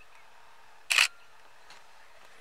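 A camera shutter firing once about a second in: one short, sharp double click, over faint steady background noise.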